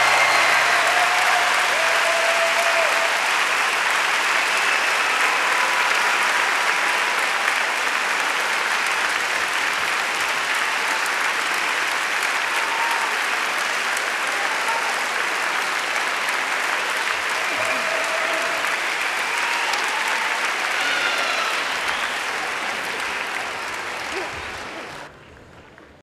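Audience applauding steadily in an auditorium; the applause drops away sharply just before the end.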